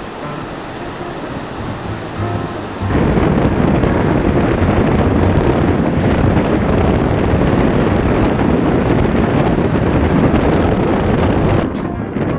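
Ocean surf and wind buffeting the microphone, suddenly much louder about three seconds in and holding as a loud, even rush until just before the end.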